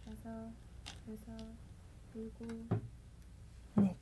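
Faint background music of short, repeated plucked-string notes, with a couple of sharp clicks from go stones: a stone is taken from the bowl and set down on the wooden board.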